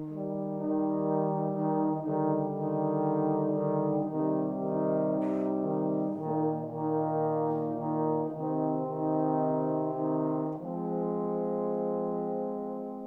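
Trombone quartet of three tenor trombones and a bass trombone playing slow, sustained chords. All four enter together at the start after a moment of quiet and move to a new chord about every two seconds, ending on a long held chord.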